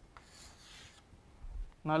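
Chalk scraping on a chalkboard as a circle is drawn around a letter: a single short scratchy stroke lasting under a second.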